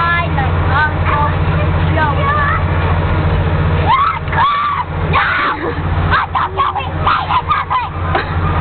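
High-pitched children's voices shouting and squealing over a steady low mechanical hum. The hum drops out briefly about four and a half seconds in, and the voices grow busier in the second half.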